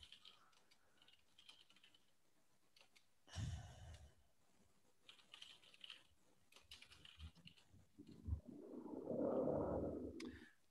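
Faint typing on a computer keyboard: scattered light keystrokes. A louder, muffled low noise comes in for the last two seconds.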